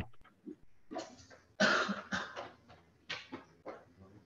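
A few short bursts of faint background noise, the loudest about a second and a half in, coming through an open microphone on a video call; the lecturer suspects one of the microphones is still on. The bursts are short and noisy, like coughs.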